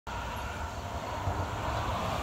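Steady outdoor background noise: a low rumble with an even hiss over it, the kind of ambient din that distant traffic or wind on a phone microphone makes.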